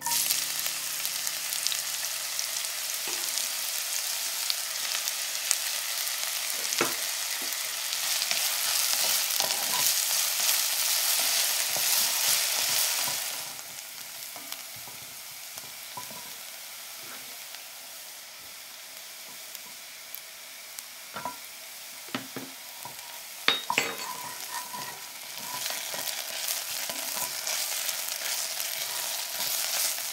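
Chopped red onion sizzling loudly in hot olive oil in an enamelled cast-iron pot, the sizzle dropping to a gentler fry about halfway through. A wooden spatula stirs the onion and knocks against the pot a few times, and the sizzle grows louder again near the end.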